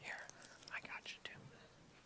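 Faint whispering from a person's voice, a few soft broken syllables.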